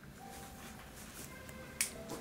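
Faint, lingering piano notes, then a single sharp click near the end.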